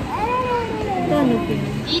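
A high voice giving one long, drawn-out, meow-like cry that rises briefly and then slides down in pitch.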